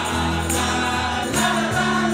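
Live acoustic band playing guitars, with a group of voices singing along and a light percussion hit about every second; the chord changes about two-thirds of the way through.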